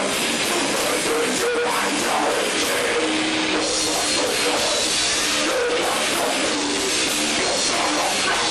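A live rock band playing loud and without a break: electric guitar and drums, with a singer singing into a microphone.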